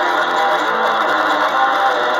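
Gear4music Precision-style electric bass played continuously through an amp with some reverb: a loud, dense, unbroken run of notes.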